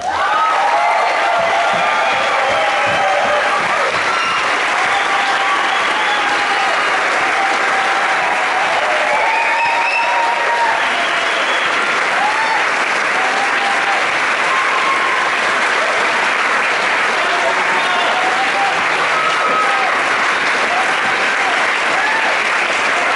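A large audience applauding and cheering, with steady clapping and many shouts and whoops over it, at the end of a tango performance.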